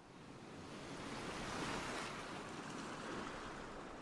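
A wave washing in and drawing back, a rushing noise that swells to its loudest about two seconds in and then fades.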